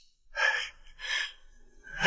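An elderly man crying: two gasping sobs, less than a second apart.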